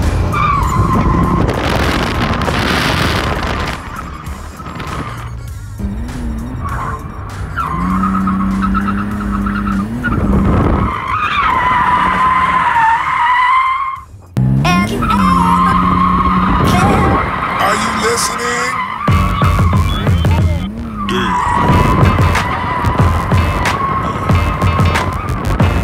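BMW E46 drifting, heard from inside the cabin: the engine revs up and down while the tyres squeal in long, wavering screeches. The sound briefly drops out about fourteen seconds in.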